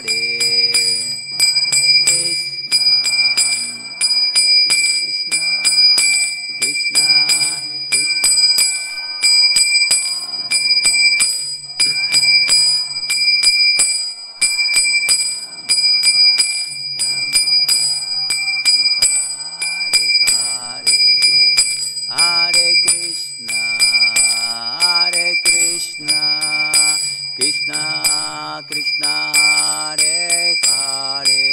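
A man singing a devotional chant in a slow melodic line, accompanied by small hand cymbals (karatalas) struck in a steady rhythm, their high ringing sustained throughout.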